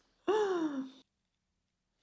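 A person's voiced sigh: one sliding note, falling in pitch, under a second long, then dead silence.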